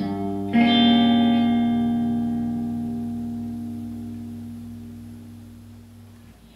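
Electric guitar playing a G diminished chord: one strum, then a louder strum about half a second in that rings out and fades slowly.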